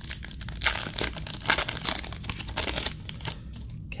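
A Topps Chrome baseball card pack wrapper being torn open and crinkled by hand: a dense run of crackling and tearing that stops just before the end.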